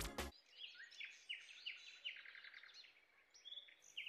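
Faint birds chirping: a run of short, high chirps a few times a second, thinning out after about two seconds, with a couple more near the end.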